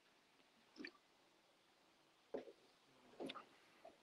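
Near silence: room tone, with three faint, brief sounds spread through it.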